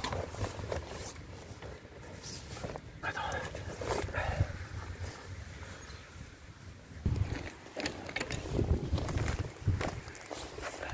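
Wind on the microphone, with rustling and footsteps through long grass as the camera is carried. The handling and footstep noise gets louder about seven seconds in.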